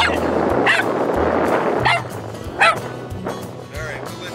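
Small dog yipping, about five short high yips, the loudest a little past halfway, over background music with a low bass line.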